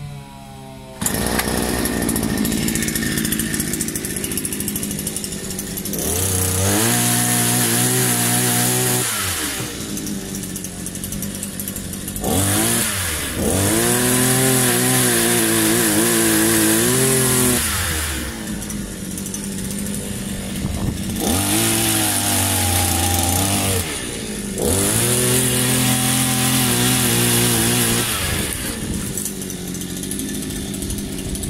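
Multi-tool pole chainsaw cutting overhead branches: its motor is run up to full speed four times for about three to five seconds each, the pitch climbing as each cut starts and dropping back to a lower running sound between cuts.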